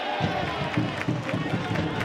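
Baseball stadium crowd: many overlapping voices shouting and calling from the stands.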